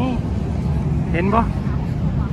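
Short bursts of speech over a steady low outdoor rumble.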